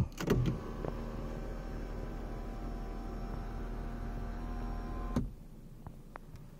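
BMW i4's electric sunroof motor running with a steady hum for about five seconds, then stopping with a click.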